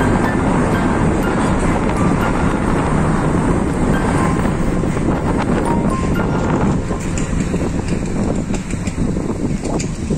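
Steady road and wind noise of a moving car, heard from inside the cabin; it eases a little in the last few seconds.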